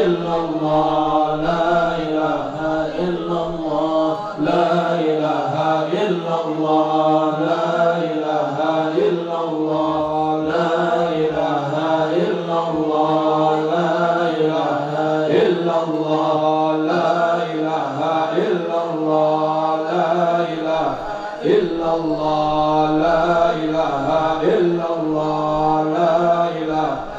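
Several men chanting an Islamic dhikr together into microphones, long drawn-out melodic phrases sung in unison with no pauses.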